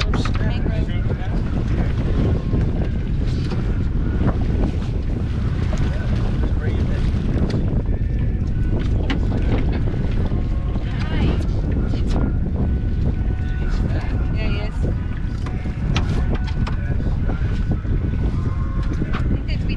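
Wind buffeting the microphone, a steady low rumble over open water, with occasional short clicks and knocks from handling gear on the boat.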